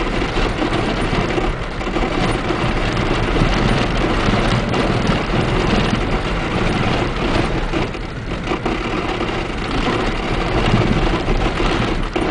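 Jeep driving on a corrugated gravel road, heard from inside: its engine running under a steady, loud noise of tyres on the washboarded gravel.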